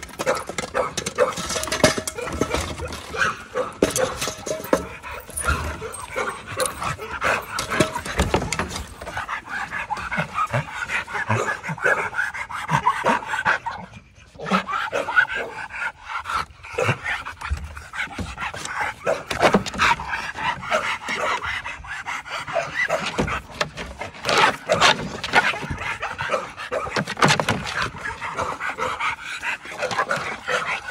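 A pit bull-type dog panting steadily with its mouth open, with a short lull about halfway through.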